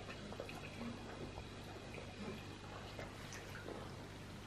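Quiet room with a steady low hum and a scatter of faint, small clicks and taps from eating at a table: fingers and utensils on plates.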